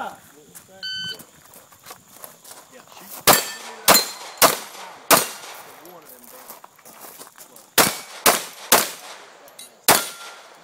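An electronic shot timer beeps once, briefly, about a second in. Then come gunshots: four quick shots about half a second apart, a pause of over two seconds, then three more and one last shot at the end, the final one from a handgun.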